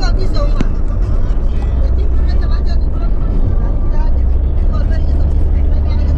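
Steady low rumble of a car's engine and tyres on paved road, heard from inside the moving car's cabin.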